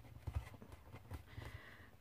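A few faint, irregular taps and handling noises as hands press and handle a paper-and-card gift bag on a craft mat, over a low steady hum.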